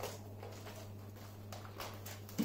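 Faint handling noises, a few soft knocks and clicks, from a Dyson upright vacuum cleaner being tipped over by hand with its motor off, over a steady low hum.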